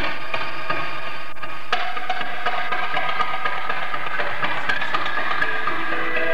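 Amplified electric guitar playing a fast run of picked notes that starts suddenly, dense and ringing.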